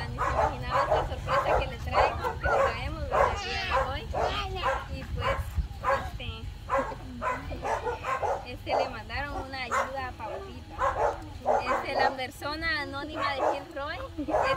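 Women talking in Spanish with short pauses, over a steady low rumble.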